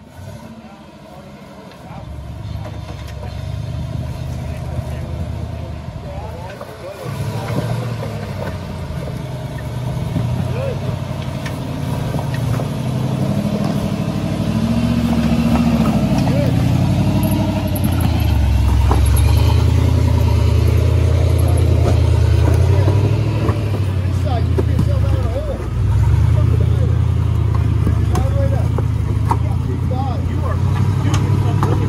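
Lifted off-road Jeep on big tyres crawling up a rock trail, its engine running under load and revving up and down. The sound grows louder as the Jeep comes close.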